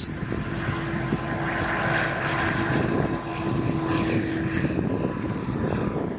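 Electra hybrid-electric demonstrator aircraft with a row of wing-mounted electric propellers, running at takeoff power as it takes off and climbs: a steady propeller and motor drone. A single held tone rides on the drone for most of the time and fades out near the end.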